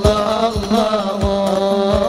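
Devotional qasidah singing: one voice carries an ornamented, wavering melody over a steady drone, with low drum beats about one and a half times a second.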